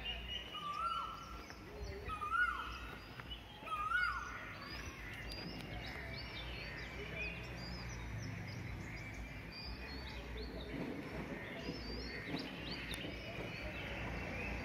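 Several birds chirping and calling, with one louder short call repeated three times in the first four seconds, each note dropping in pitch at its end, over a steady low outdoor rumble.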